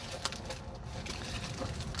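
Scraping, scratching and small clicks of a cardboard box being wrestled open by hand.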